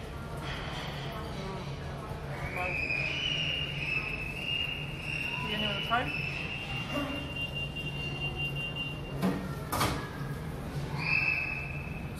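A high-pitched scream held for several seconds, stepping slightly in pitch, then a shorter scream near the end. A sharp click about ten seconds in.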